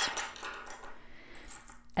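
Small metal hand tools (pick and latch tools, tweezers, darning needles) being set down on a wooden tabletop: light clinks and rattles, strongest early on.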